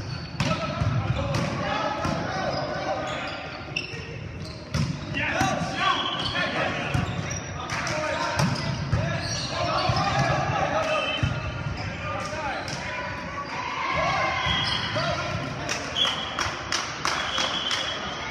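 Volleyball rally in a large gymnasium: players' shouted calls with sharp slaps of the ball being struck and hitting the hardwood floor, echoing in the hall.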